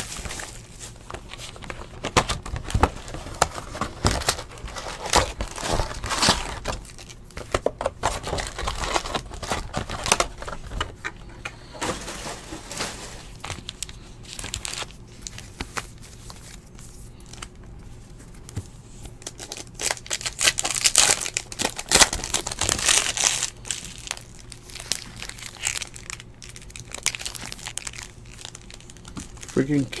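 Plastic box wrap and foil trading-card pack wrappers crinkling and tearing as a hobby box is opened and its packs handled, in irregular rustles with sharp crackles.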